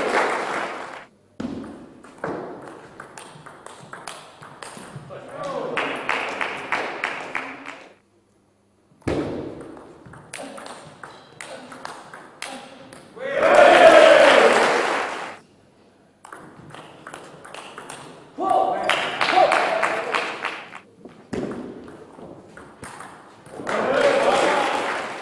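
Table tennis rallies: a celluloid ball clicking sharply back and forth off the rackets and the table. Between points, spectators in the hall clap and shout, the loudest moments about fourteen seconds in and near the end.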